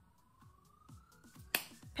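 A faint, slowly rising whistle-like tone, then one sharp snap of the hands about a second and a half in.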